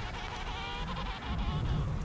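A short, buzzy, honking call from an emperor penguin about half a second in, over a steady low rumble.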